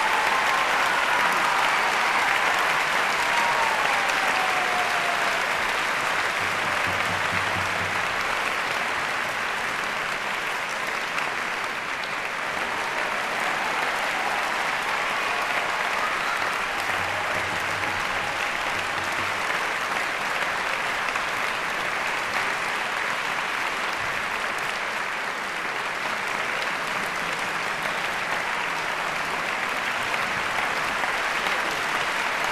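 Audience applauding steadily in a concert hall, an even, unbroken clapping that keeps up throughout.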